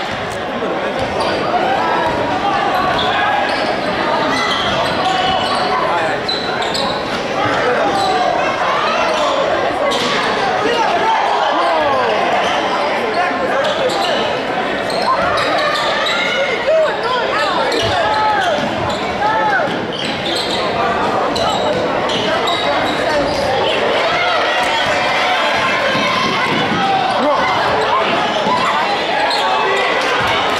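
Live basketball game play in an echoing gym: a basketball bouncing on the hardwood, sneakers squeaking and players and spectators calling out, loud and continuous.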